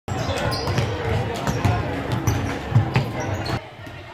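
Several basketballs being dribbled on a sports-hall floor: irregular, overlapping bounces mixed with players' voices and chatter. The sound drops suddenly shortly before the end.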